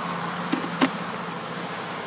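Honeybees buzzing steadily in a mass, just shaken out of a package into an open hive. Two short knocks about half a second and just under a second in.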